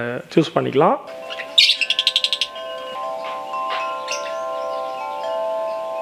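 Metal tube wind chime ringing: several long, clear tones overlap and are joined by new strikes every second or two. A bird gives a short, rapid high trill about two seconds in.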